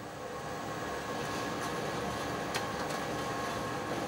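Automated investment-casting shell-building machine running: a steady mechanical noise with a faint hum, getting a little louder about a second in.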